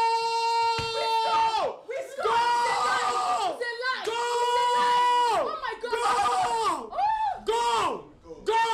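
Football fans screaming in celebration of a goal: long, high-pitched held yells, each dropping in pitch as it ends, one after another with short breaks for breath. The later yells are shorter.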